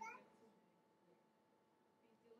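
Near silence: room tone with a faint steady hum, after a short trailing voice sound in the first instant.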